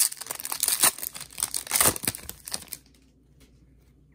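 Foil wrapper of a football trading-card pack being torn open and crinkled, a dense run of crackles that stops about three seconds in.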